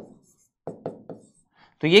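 Three light taps of a pen or stylus on a writing surface, about a quarter second apart, as a short equation is written out.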